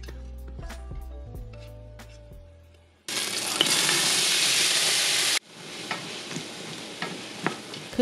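Background music fades out, then chopped onion, celery and green bell pepper hit hot beef fat in a stainless steel pot and sizzle loudly at once. A little over two seconds later the sizzle drops abruptly to a quieter steady sizzle with light crackles.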